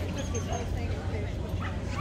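A dog barking and yipping in short calls, with people talking around it.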